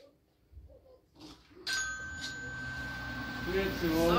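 Glass shop entrance door opening, with a single steady electronic entry tone that starts about one and a half seconds in and holds while the door stands open. Outside noise comes in with it as a hiss and low rumble, and a voice is heard near the end.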